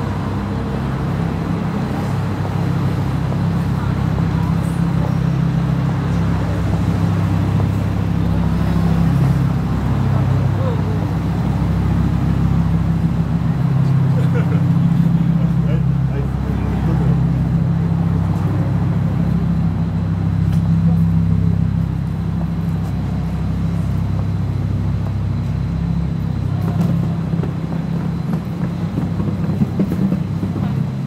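City street sound: a steady low hum of vehicle engines and traffic, with people talking in the background.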